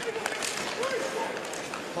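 Play-by-play hockey commentary, a man's voice in short phrases, over steady arena background noise, with a sharp click or two near the start.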